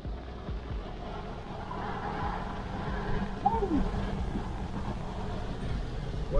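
Cab noise of a Ford F-250 with its 6.7 L Power Stroke V8 turbo-diesel, cruising on the highway: a steady low drone of engine and tyres on the road.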